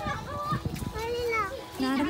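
Children's high-pitched voices calling and shouting in short bursts while they play.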